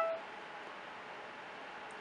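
Steady faint hiss of room tone and microphone noise, after a short tone that cuts off just after the start.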